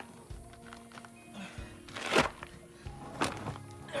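Concrete paver being shoved into place on gritty ground: a rough scrape a little after two seconds in and a shorter, sharper knock about a second later, over background music with steady held notes.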